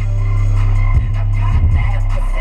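Music played loud through two cheap 12-inch subwoofers in a car's trunk, the bass loudest: deep held bass notes, with short kick-drum hits about a second in and again shortly after.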